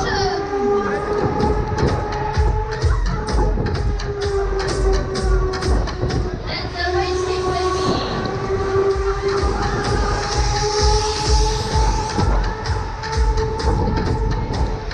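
Loud ride music from a Huss Break Dance fairground ride, with a steady beat and long held tones, heard from on board as the cars spin. A burst of hiss from a fog machine comes about ten seconds in.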